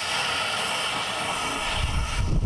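Water from a garden hose nozzle pouring into a plastic backpack sprayer tank as it is filled, a steady hissing splash that cuts off near the end.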